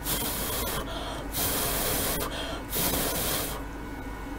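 Three short hissing bursts of air or spray, each just under a second long and evenly spaced.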